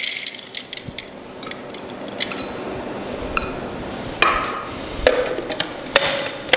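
Dried berries tipped into a plastic food-processor bowl, with light clicks and a rustling patter, then a few sharper knocks of plastic parts being handled near the end. The processor motor is not running.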